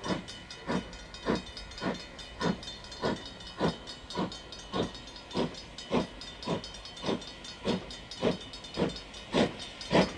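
Steam locomotive working slowly, its exhaust beating from the chimney in even chuffs a little under two a second over a steady hiss of steam, the beats growing louder near the end.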